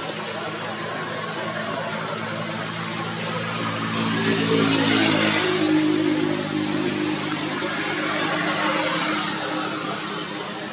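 A motor vehicle engine running steadily, growing louder about four to five seconds in and then fading, like a vehicle passing by.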